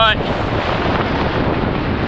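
Strong wind, around 30 mph, blasting the camera microphone in a steady rushing noise, with waves breaking on the jetty rocks beneath it.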